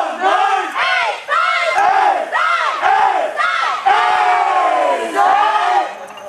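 Women's voices chanting a sorority call in unison: a string of high cries, each rising and falling, about two a second, with one longer held cry near the end.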